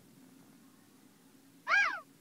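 A single short, high-pitched meow-like call near the end, rising and then falling in pitch, over faint background hum.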